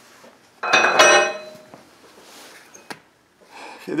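A clank of heavy steel parts on a rear grader blade's angle-adjustment head about a second in, ringing briefly, followed by a small sharp click near the end.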